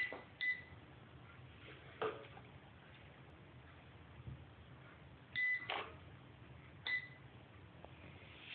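Four short electronic beeps at one high pitch: two close together at the start, then two more spaced apart in the second half. A few faint clicks fall in between.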